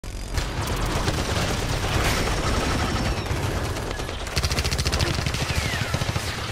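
Sound-effect gunfire: a continuous fusillade of rapid automatic shots that starts suddenly, growing denser and faster from a little past four seconds in. A short falling whistle comes near the end.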